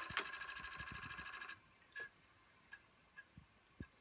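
Apple IIe's Disk II floppy drive at boot: a rapid, even clatter for about a second and a half as the head is stepped back against its stop, then a few single clicks as the head steps while the disk loads.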